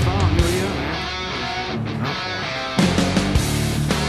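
Rock music with electric guitar; a little under three seconds in, the full band comes in louder with hard drum hits.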